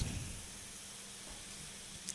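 A pause in speech: faint, steady background hiss of the recording, with a faint low hum.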